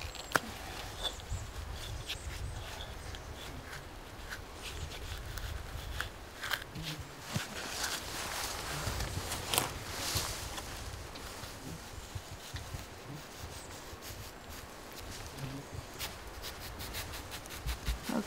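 A hatchet blade set into and worked against the bark of a red cedar, giving scattered irregular knocks and scrapes, with rustling of clothing and handling between them.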